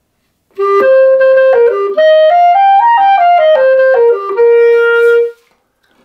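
Solo B-flat clarinet playing a short phrase of separate notes that step up and back down, ending on a long held note. The last note swells slightly and is pushed off at its release, a stressed release, the habit of players who count with their breath.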